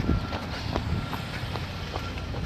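Brisk footsteps on pavement, about two and a half steps a second, over a steady low rumble on the phone's microphone.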